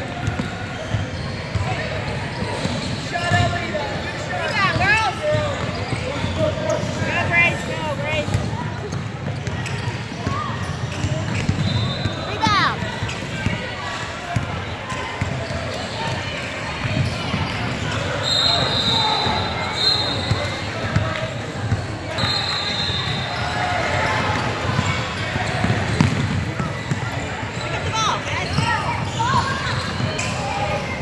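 Basketball bouncing on a hardwood gym floor during play, with echoing shouts and voices from players and spectators. A short, steady, high whistle sounds twice in the second half, after about 18 and 22 seconds.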